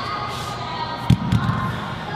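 A heavy dumbbell set down on a rubber gym floor: a dull thud about a second in, then a smaller second thud as it settles.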